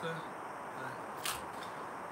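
A single short click about a second in, from objects being handled in a box, over steady faint room noise.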